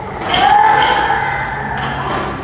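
Voices singing long held notes, one note gliding up and then holding about a quarter second in.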